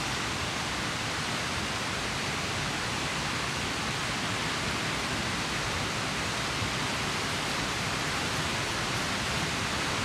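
Mountain stream rushing steadily over rocks and riffles, an even hiss of flowing water with no breaks.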